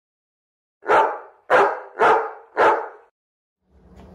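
A dog barks four times, about half a second apart.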